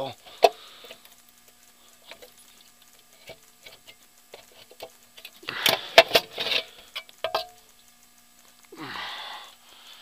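A valve cover being worked loose by hand from the cylinder head of a 454 V8 with the engine off. Scattered sharp clicks and knocks of metal on metal are heard, with a burst of clattering and scraping about halfway through, which is the loudest part. A short rustling rush follows near the end.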